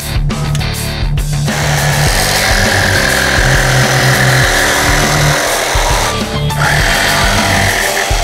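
Makita DJV180 cordless jigsaw cutting through a laminate plank, a steady rasping buzz that starts about a second and a half in, breaks off briefly around six seconds and resumes. Rock music plays underneath.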